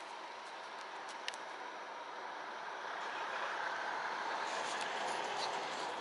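Steady rushing background noise that gradually grows louder from about two seconds in, with a couple of faint ticks near the start.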